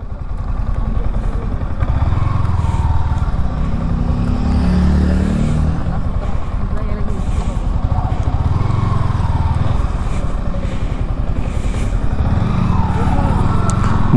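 Yamaha R15 V4 sport bike's 155 cc single-cylinder engine running while riding, its note rising and falling a few times with the throttle, over wind and road noise.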